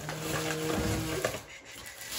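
Paper grocery bag and plastic packaging rustling as a hand digs through the bag, with a steady low hum for about the first second, then quieter rustling.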